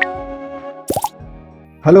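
Intro logo sting: held musical notes fading out, with a quick rising sweep at the start and a short pop-like sound effect about a second in. A man's voice begins just at the end.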